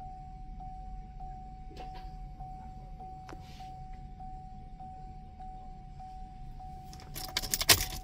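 A steady high electronic tone with a faint regular pulsing, over a low hum. Near the end comes a brief, loud rattling clatter.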